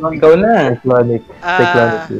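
A person laughing and vocalizing loudly in several short bursts, the last a longer wavering laugh near the end.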